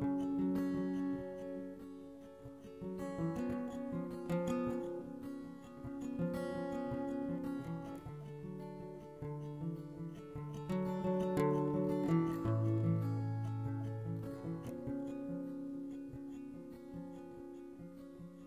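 Acoustic guitar playing an instrumental song intro, its chords and notes ringing out and changing every second or so.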